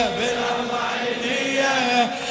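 Male voice chanting an Arabic Shia latmiya (noha), holding long, steady notes between sung lines.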